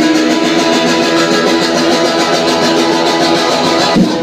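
A guitar being strummed loudly and steadily on its own, in a live punk band recording.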